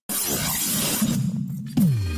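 Logo-sting sound effect: a glassy shattering whoosh over a low drone, ending with a tone that slides quickly down in pitch.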